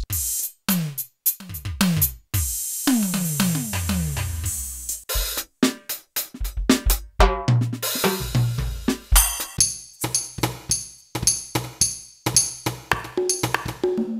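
Built-in drum kit sounds of a Roland TD-1 electronic drum module, played in quick fills as it steps from one kit to the next. The first seconds have rolls down the toms, falling in pitch, under a crash cymbal. From about eight seconds in there is a steady beat of kick and snare with a bright cymbal or hi-hat on every stroke.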